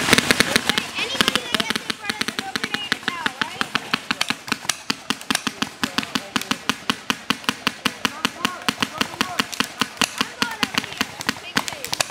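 Paintball markers firing in rapid succession, several sharp shots a second, loudest in the first two seconds. Players are shouting in the background.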